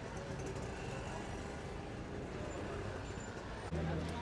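Open-air market street ambience: a steady hum of passing traffic. Near the end it steps up louder with a low, steady drone.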